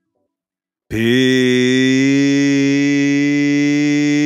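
A low droning tone with many overtones cuts in sharply about a second in and then holds at one steady pitch.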